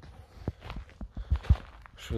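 Footsteps of a person walking up close, a series of irregular thuds, the heaviest about a second and a half in.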